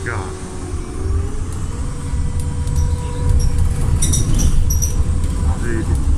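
Inside a moving city bus: a steady low rumble of the engine and road with a held whine, growing louder about three seconds in as the bus picks up speed, and a few brief high squeaks or rattles around the middle.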